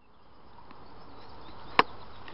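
Steady outdoor background noise with a single sharp knock near the end.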